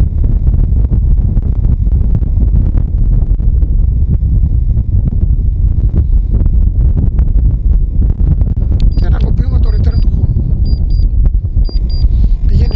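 Strong gusty wind buffeting the microphone: a loud, steady low rumble throughout. A few short high beeps sound near the end.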